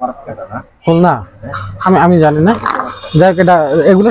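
A man's voice making drawn-out, wavering sounds without clear words.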